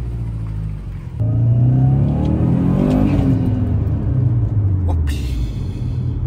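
Turbocharged flat-four engine of a modified Subaru Impreza WRX STI driving past under power. It gets louder about a second in, and its pitch rises and falls as it revs.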